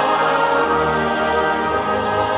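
A mixed church choir singing sustained chords with orchestral accompaniment.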